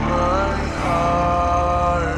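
Heavy metal riff on an eight-string electric guitar with a full band mix: sustained high notes slide in pitch and then hold, over a dense low end that breaks into rapid chugging pulses about three-quarters of a second in.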